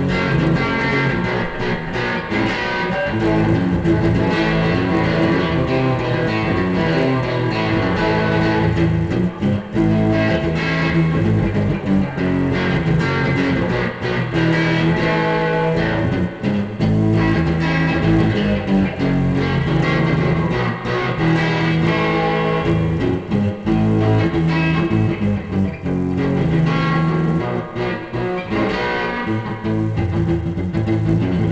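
Sunburst Stratocaster-style electric guitar played through an amplifier: an unbroken run of picked notes and chords with only brief pauses.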